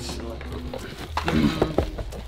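Cardboard shoebox being handled and opened, with tissue paper rustling and a few light knocks of the box, over faint voices and a low steady hum.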